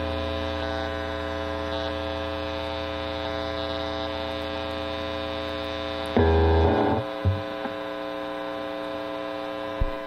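Miked electric guitar amplifier on a distortion channel giving off a steady mains hum and buzz with no note played. This is the idle noise that a noise gate is meant to cut. About six seconds in there is a brief louder burst, followed by a small click.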